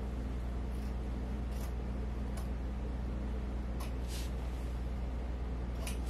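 A few faint, sharp snips of small scissors cutting at the stitching and fabric of a jersey, spaced irregularly, over a steady low hum.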